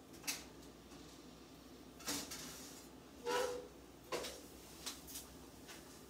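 A few separate clicks and clunks from a countertop toaster oven being shut and its controls set, and kitchen handling, spread over several seconds; one clunk about three seconds in has a brief ringing tone.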